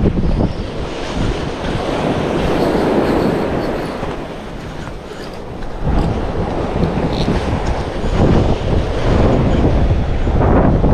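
Wind buffeting the microphone over surf breaking on the shore, easing a little and then surging back about six seconds in.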